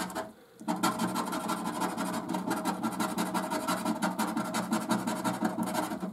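Rapid, steady scratching as the scratch-off coating is scraped from a scratchcard's play panel, starting after a brief pause about half a second in.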